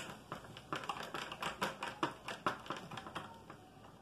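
Fingers pressing cold-porcelain (biscuit) clay into a thin clear plastic mold, the plastic clicking and crackling in many light, irregular taps, a few each second.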